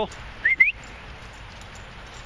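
A person whistling to call a dog: two short, quick whistle notes, each sliding upward, about half a second in.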